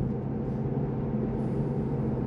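Steady in-cabin running noise of a Porsche Taycan electric car on the move: an even rumble of tyres and road with a low, steady hum.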